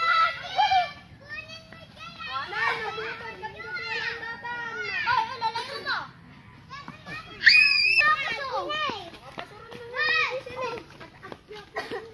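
Children's high voices calling and chattering as they play, with a loud, high-pitched shout about seven and a half seconds in.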